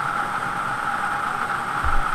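Air-blown lottery ball machine running: its blower gives a steady whirring hiss as the numbered balls tumble around inside the clear globe.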